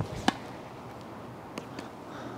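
Tennis ball bouncing on a hard court and struck off the strings with a backhand slice drop shot: two sharp pocks about a quarter second apart at the start, then a few faint taps of the ball bouncing farther off.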